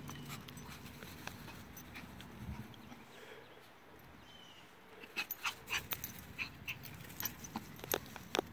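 A Yorkshire terrier sniffing along the grass. It is quiet at first, then there is a quick run of short, sharp sniffs over the last three seconds.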